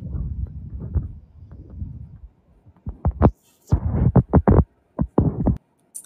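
A low, throbbing rumble for about two seconds, then a quick, irregular run of about a dozen thumps and knocks.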